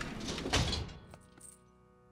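A cartoon door shutting with a quick thunk about half a second in, over faint background music that fades away.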